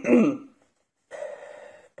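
A man's speech trails off in the first half-second. After a short dead silence, he takes a sharp intake of breath lasting under a second, which is cut off abruptly by an edit.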